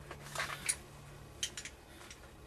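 Faint clicks and rustles of a retractable seat belt retractor, its webbing and a bolted steel L-bracket being handled and turned in the hands: a couple of short taps about half a second in and again about a second and a half in, over a steady low hum.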